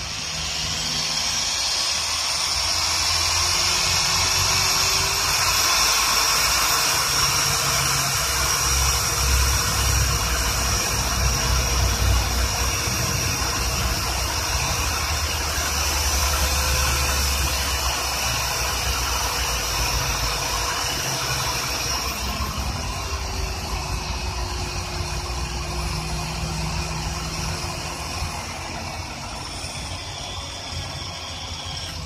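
Pen-style mini polisher's small electric motor running, its foam pad buffing car paint. A steady whine that rises in pitch about two seconds in and drops again about two-thirds of the way through, over a hiss and a low rubbing rumble that comes and goes.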